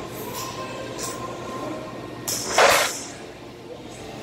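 A short, loud hiss lasting under a second about two and a half seconds in, over faint background music.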